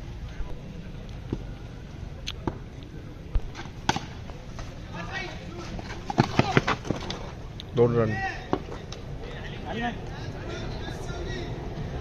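A sharp knock of a cricket bat striking a tennis ball, with a few more short knocks, followed by a burst of shouting from players on the field.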